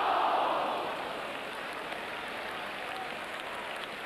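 Football stadium crowd reacting to a goalkeeper's save: a surge of crowd noise at the start that dies down to a steady murmur.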